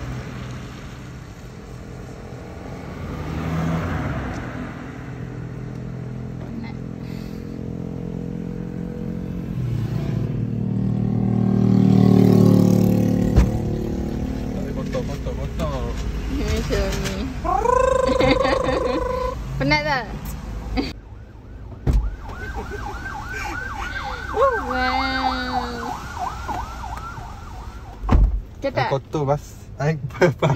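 Road traffic: car engines running past, with one vehicle passing close and loudest about twelve seconds in.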